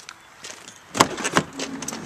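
Minivan sliding-door handle and latch being worked: a sharp click about a second in, followed by a few lighter clicks and knocks as the door releases.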